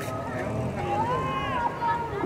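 Voices shouting and calling across a football pitch, with one long drawn-out call in the middle, over a steady low rumble.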